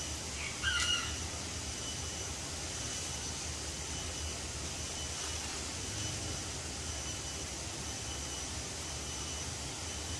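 Steady low rumble with a faint high-pitched drone pulsing over it, and one short high call about a second in.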